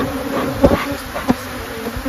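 Swarm of honey bees buzzing loudly around an open hive, many flying close past the microphone, their pitch wavering as they come and go. This is a defensive ("hot") colony on the attack. Two sharp taps sound about halfway through and again a little later.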